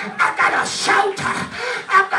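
A preacher's rhythmic, breathy vocal bursts into a handheld microphone, without clear words, over background music holding a steady note.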